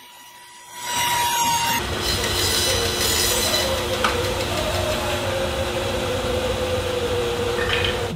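A bandsaw starts about a second in and cuts a circle through a hickory slab, running steadily with a held whining tone over the cutting noise.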